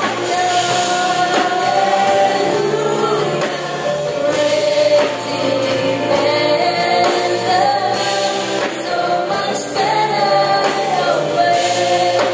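A worship team of male and female singers singing a Christian worship song together into microphones, holding long notes, over band accompaniment with a steady beat.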